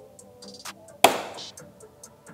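A single sharp click about a second in as the centre pin of a plastic push rivet on a motorcycle side panel is pressed in with a pointed tool, releasing the fastener, with a brief fading tail and a few small ticks from the tool.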